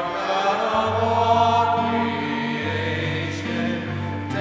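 A choir singing a slow offertory hymn, with long held notes and a low line that moves to a new note about a second in and again near the end.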